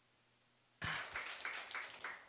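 Audience applause, picking up about a second in after a brief dropout to dead silence.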